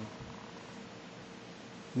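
Quiet room tone with a faint steady hum, after a brief murmur at the very start.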